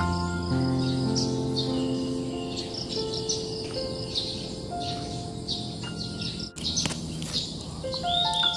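Small birds chirping and twittering in short repeated calls, over soft background music of held, slowly changing notes.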